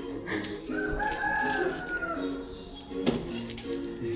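A rooster crowing once: one long call of about a second and a half, rising slightly and then falling away, with music playing in the background.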